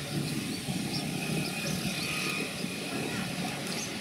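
Steady outdoor background noise of distant traffic, with no distinct events.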